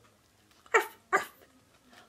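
A woman imitating a dog's bark, saying 'arf, arf': two short, loud yaps with falling pitch, in quick succession.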